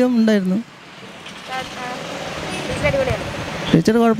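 Road traffic noise from passing vehicles, growing louder over a couple of seconds in a pause between a man's speech.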